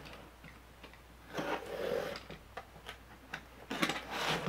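Quiet handling sounds: a few light, scattered clicks and a short scrape about one and a half seconds in, from hands working a small plastic box cutter and packaging.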